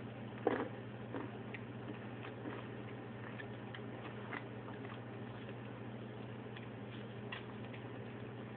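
A person chewing a candy-coated peanut M&M: scattered faint crunches and mouth clicks, the strongest about half a second in, over a steady low hum.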